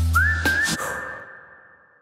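Logo sting sound effect: a low hum with two sudden hits in the first second, and a whistle-like tone that slides up, holds steady and fades away over about two seconds.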